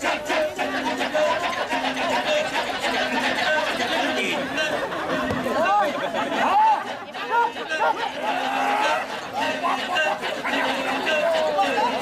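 Kecak chorus of men chanting in many overlapping voices, with a low held note repeating about once a second and rising and falling vocal cries over the top.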